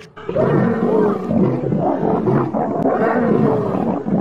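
Lions roaring as they fight, a loud, unbroken roaring that starts a moment in after a brief drop in sound.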